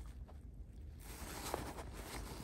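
Faint rustling of a handbag's fabric lining being handled and pulled by hand, with a couple of light ticks, over a low steady background hum.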